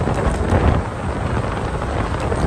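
Wind and road noise inside a moving car: a steady low rumble with the air buffeting the microphone.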